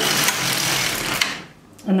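LK150 knitting machine carriage pushed by hand across the needle bed, knitting one row: a steady clattering rush of about a second and a half, with a click near its end as the carriage reaches the far side.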